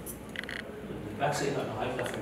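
A man's voice through a microphone, with short high chirping pulses twice, about half a second in and near the end.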